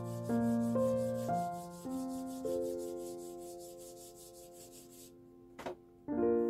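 Quick, even back-and-forth strokes of a flat abrasive tool being rubbed over a wooden pencil barrel by hand. The strokes stop about five seconds in, followed by a single click. Soft piano music with decaying notes plays throughout.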